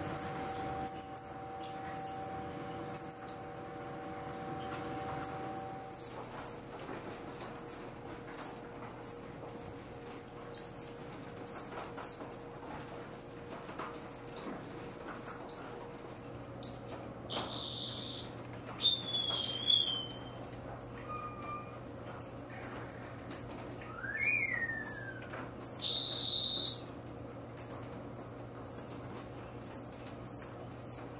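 A mixed aviary flock of small estrildid finches calling: a steady patter of short, high chirps, several a second, with a few longer sliding calls in the second half.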